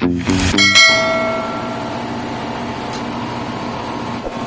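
Background music stops in the first second and a single bell-like chime rings out and fades over about a second. After it a steady machinery drone of a ship's engine room carries on.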